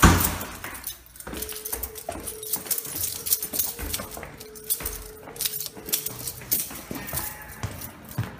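Footsteps going down stairs and onto a hard floor, with clattering and jangling as the person walks, and a loud knock at the very start. A thin steady tone holds from about a second in until about six seconds.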